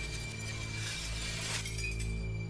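Glass shattering about a second and a half in, led up to by a swelling hiss, over a steady low music drone.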